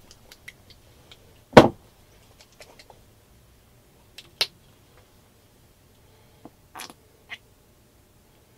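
Handling and squeezing a plastic bottle of acrylic paint onto a canvas: scattered small clicks and knocks, one loud thump about a second and a half in, and a few short squeezes near the end.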